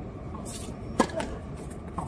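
A tennis serve: one sharp pop of the racket strings striking the ball about a second in, then a fainter knock near the end.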